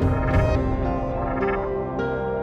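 Programme ident music: sustained notes held under a short, noisy whoosh-like sound effect in the first half second.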